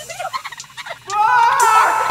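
A sampled animal call: a rapid run of short pitched chattering sounds, then a louder call that rises and wavers in pitch through the second half.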